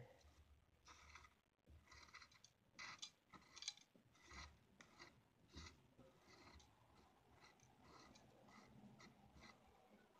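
Faint scraping and small clicks of broken glass fragments being swept by hand onto a plate, in short irregular strokes that thin out after the first six seconds or so.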